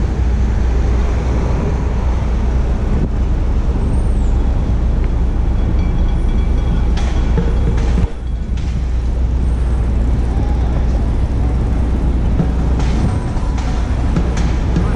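Steady city street traffic noise with a heavy low rumble from passing vehicles, a brief high squeak about four seconds in, and a short drop in the noise just after eight seconds.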